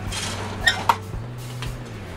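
Horizontal window blinds being tilted closed by their wand: a short rustle of the slats, then two light clicks close together about two-thirds of a second in.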